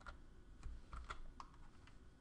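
Faint typing on a computer keyboard: a quick run of about a dozen separate keystrokes.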